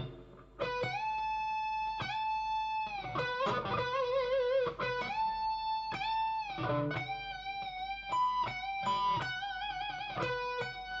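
Telecaster-style electric guitar playing a slow lead solo line: single notes held about a second each, several bent up and released or shaken with vibrato, quickening into shorter notes over the last few seconds.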